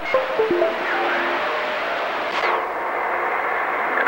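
Radio receiver static: a steady hiss cut off above the voice band, with short whistling tones at different pitches in the first second and a half and a faint falling whistle just past the middle, while the station waits for the called operator to come back.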